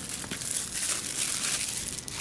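Thin plastic shrink wrap crinkling and crackling in a rapid run of small ticks as it is peeled and crumpled off a cardboard box.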